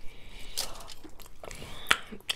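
Crispy fried chicken wings being bitten and chewed close to the microphone, with a few sharp crunches and mouth clicks; the loudest comes near the end.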